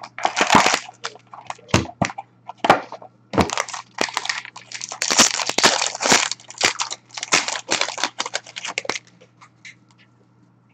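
Plastic wrapping crinkling and rustling in irregular bursts as a sealed hockey card box is unwrapped and opened by hand. The rustling stops about nine seconds in.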